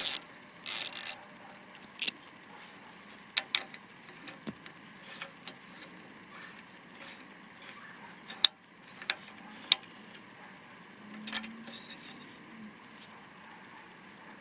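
Socket ratchet clicking briefly about a second in as the bolt of a pier foot is loosened. Then come scattered small metal clicks and taps as the shoulder bolt is turned out by hand and the aluminium foot comes off.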